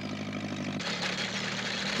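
Small farm tractor's engine running steadily, turning noisier and brighter a little under a second in.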